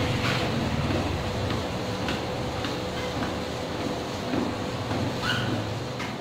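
Treadmill running under a walker: a steady motor hum and whine with the regular soft thud of footsteps on the belt.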